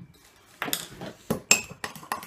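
A metal utensil clinking and knocking against a mug several times at an irregular pace.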